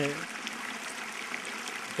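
Small mountain stream running with a steady, even rush of water.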